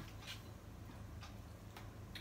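Faint, scattered clicks and taps from hands handling food at the table, over a low steady hum.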